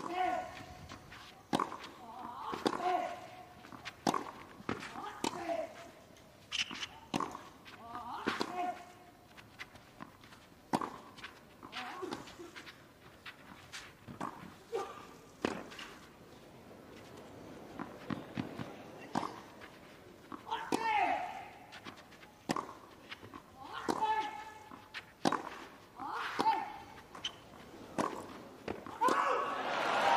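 Tennis rally: racket strikes on the ball about every second or so, many with a player's short grunt on the shot. Crowd applause starts near the end.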